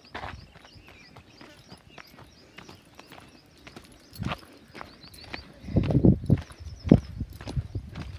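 Footsteps and scuffs on a dry dirt path, an uneven run of short knocks that grows louder and heavier over the last two seconds or so.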